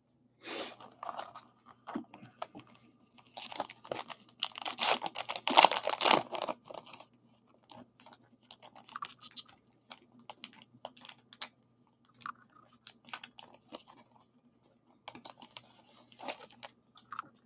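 Paper trading card pack wrapper being torn open and crinkled in the hands: a run of dry crackles and rips, loudest about four to six seconds in, then lighter, scattered crinkles as the cards are worked out of the wrapper.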